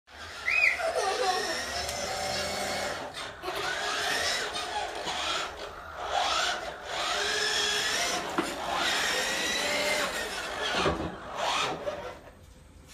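Electric motors of a kids' ride-on robot buggy whining, their pitch rising and falling as it speeds up, slows and turns, with its wheels rolling on a wooden floor.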